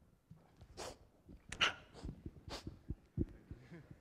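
Microphone handling noise: irregular rustles and breathy puffs with a few soft bumps, the loudest about one and a half seconds in.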